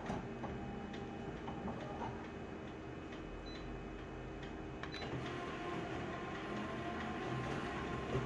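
Office colour copier running: a steady machine hum with scattered faint clicks. About five seconds in there is a sharp click, after which a steady whine joins the hum as the copy starts printing.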